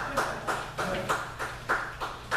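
A few people clapping, at about three claps a second.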